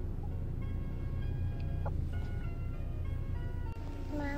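A simple, chime-like melody of held single notes plays over the steady low rumble of a car's cabin.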